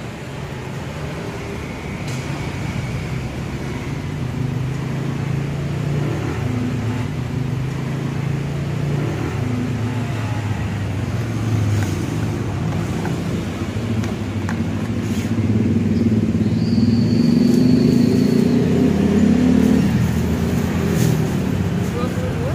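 A motor vehicle engine running, its low rumble wavering in pitch and growing louder in the second half, with a few light clicks from the counter.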